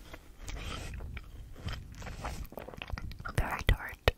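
Close-miked ASMR sounds: irregular wet mouth clicks and crackles, with soft handling of a squishy toy ball beside the microphone. The sharpest clicks come near the end.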